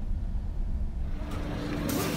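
Steady low engine and road rumble inside a moving Mercedes-Benz E250's cabin, with a faint steady hum joining about a second in and a short burst of noise at the very end.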